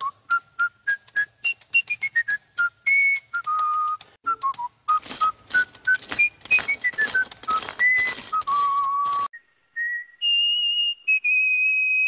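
A jaunty whistled tune in cartoon-score style: short notes step and slide up and down over light clicking percussion. After a brief pause it ends on long held whistled notes.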